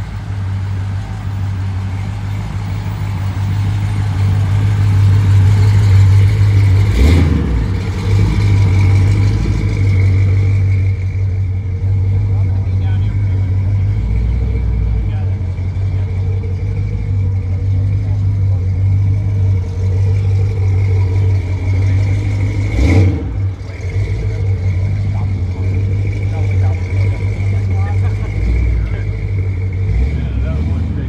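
A car engine idling steadily with a low, even running sound, a faint steady high whine above it. Two brief knocks come about 7 and 23 seconds in.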